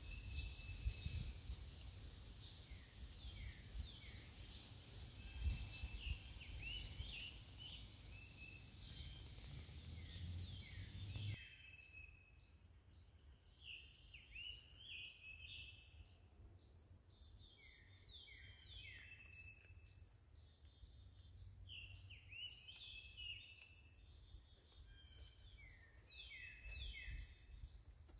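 Several songbirds singing faintly, a steady stream of short chirps and quick down-slurred notes. A low rumble of wind or microphone noise sits under the first part and stops abruptly about eleven seconds in.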